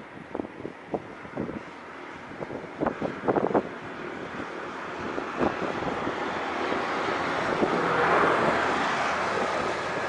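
Farm tractor engine drawing closer and growing steadily louder, loudest about eight seconds in. Wind buffets the microphone in gusts throughout.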